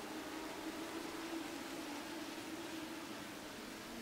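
A pack of Legends race cars, motorcycle-engined, running on the track. They are heard faintly as a steady engine drone under a hiss, with one held pitch that rises a little and falls back.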